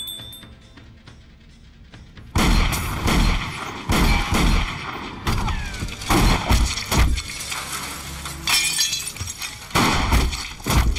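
Movie shootout sound effects over a music score: after a quiet start, a rapid, uneven volley of pistol shots and shattering glass begins a little over two seconds in and runs on, each shot with a heavy low thud.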